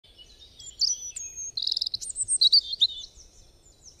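Songbirds chirping and singing: many quick high whistled notes and a fast trill, busiest in the middle and fading toward the end.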